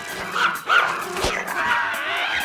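Small dog giving two short, high yaps about half a second in.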